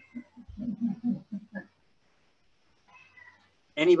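A man laughing in a quick run of short, evenly spaced ha-ha pulses that die away after about a second and a half.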